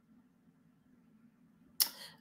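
Near silence with a faint low room hum; near the end a quick sharp inhale just before speech resumes.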